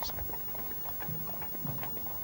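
Hooves of carriage horses clip-clopping on the parade ground as they draw open barouches in procession, fairly faint over a steady low background.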